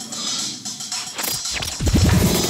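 Hip-hop DJ intro: record scratching on turntables, with quick swooping scratches near the end as the beat comes in.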